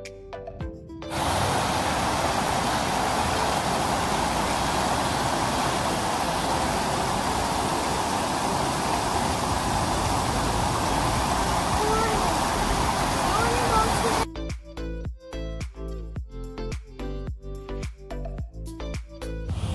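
Spring-fed stream rushing over rocks in a shallow riffle: a loud, steady rush of water for about thirteen seconds. Background music plays briefly at the start and comes back with a beat for the last few seconds.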